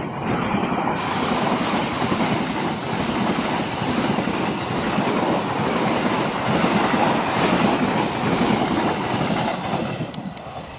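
Passenger train coaches passing close by at speed: a steady, loud rush of steel wheels running on the rails.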